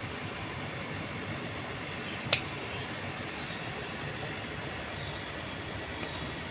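A single sharp snip of scissors cutting through an okra stem about two seconds in, over a steady hiss.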